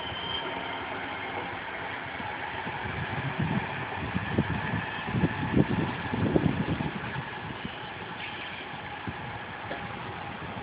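Alstom Citadis Dualis electric tram-train pulling away and receding: a steady running rumble with a faint whine at first, and a spell of irregular low thumps a few seconds in.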